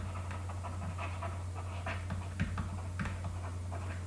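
Low steady electrical hum and hiss, with faint scattered scratches and ticks of a stylus writing on a pen tablet.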